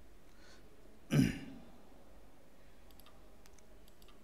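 A man clears his throat once with a short cough, about a second in. A few faint clicks of a computer mouse follow near the end.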